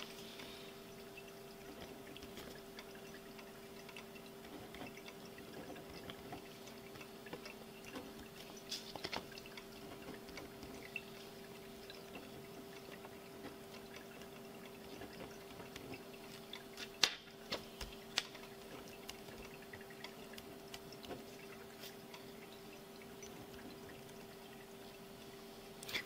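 Quiet room tone with a steady electrical hum, faint scratching of a pen writing on paper, and a few light clicks, the sharpest about 17 seconds in.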